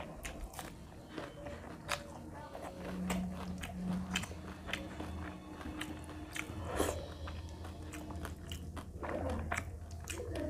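Close-miked chewing of a mouthful of rice and fried food eaten by hand: a run of short, sharp wet clicks and smacks from the mouth, over a low steady hum.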